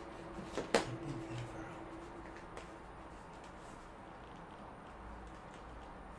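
A single sharp knock on a wooden parquet floor just under a second in, as a person's hands and feet shift into push-up position; otherwise quiet room noise with a faint steady hum in the first couple of seconds.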